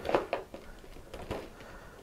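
Faint rustles and light taps of a shrink-wrapped cardboard box handled in the hands as it is turned over, mostly in the first half-second with another touch about a second later.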